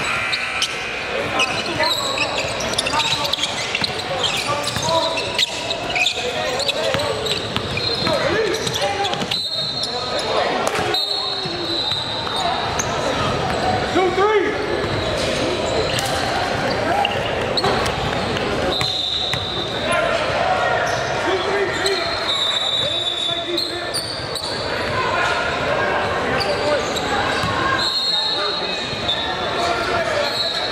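Live basketball game sounds in a large echoing gym: a ball bouncing on the hardwood court, short high sneaker squeaks, and overlapping voices of players and spectators calling out.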